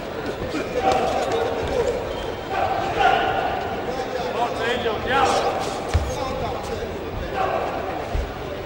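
Shouted voices echoing in a large sports hall around an amateur boxing bout, with dull thuds from the ring, the clearest about six seconds in.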